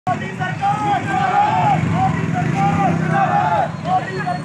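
A group of men shouting Hindi protest slogans in a repeated chant, with a motor vehicle engine running underneath.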